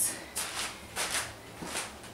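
A few brief, soft rustling shuffles of footsteps on a plastic drop cloth.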